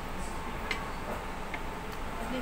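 Light, evenly spaced ticks, about two a second, over a steady room hum.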